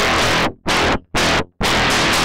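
Heritage H-150 electric guitar played through the Reaktor Blocks Chebyshev waveshaper set super rough, giving a harsh, fuzzy distortion. Three short chord stabs, each cut off abruptly, then a long held chord from a little past halfway.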